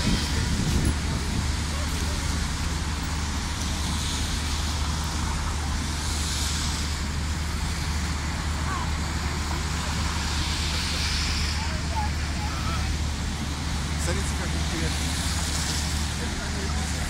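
Outdoor city-square ambience: a steady low rumble of traffic noise with scattered voices of people in the crowd.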